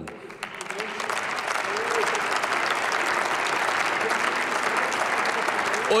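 Applause from members of parliament in a large plenary chamber, building up over the first second and then holding steady.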